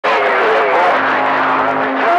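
CB radio receiver on channel 28 pulling in skip: loud static hiss with garbled, warbling voices that cannot be made out. A steady low heterodyne tone joins about halfway through.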